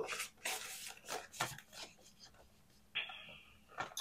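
Paper and plastic being handled: a printed card rustling as it is slid into a clear plastic binder envelope, in several short rustles, with a brief sliding sound about three seconds in.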